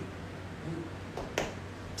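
Two short, sharp clicks about a fifth of a second apart, over a low steady hum.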